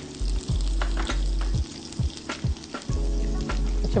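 Shallots and garlic frying in hot coconut oil in a wok, a steady sizzle, with the wooden spoon clicking and scraping against the pan at irregular intervals as they are stirred.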